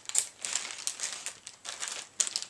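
Plastic soft-bait packaging crinkling as it is handled, in a quick run of irregular crackles and rustles.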